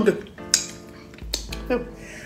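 Eating by hand: about three short, sharp mouth clicks and smacks while chewing a mouthful of akpu with okra pepper soup, over faint background music.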